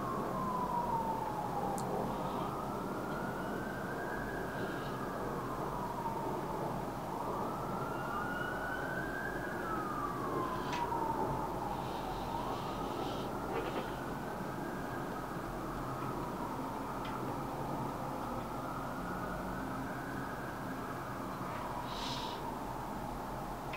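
A siren wailing, its pitch slowly rising and falling about every five seconds.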